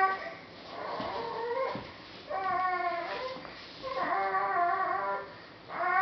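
A baby making drawn-out, whiny vocal sounds: four wavering calls of about a second each, the first rising in pitch at its end and the last, loudest one starting near the end.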